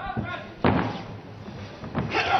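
A boxing glove landing a punch: a light hit just at the start, then one loud, sharp impact about two-thirds of a second in, over the arena's background noise.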